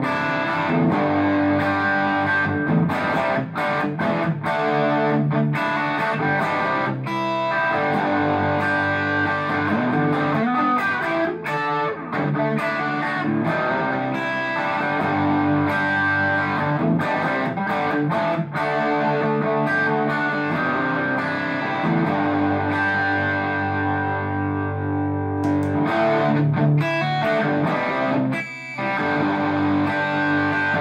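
Heritage 535 semi-hollow electric guitar with Bare Knuckle Mule humbuckers, played through a Carr Mercury single-ended class A EL34 valve amp with a distorted tone, ringing chords and single notes. The playing breaks off briefly near the end.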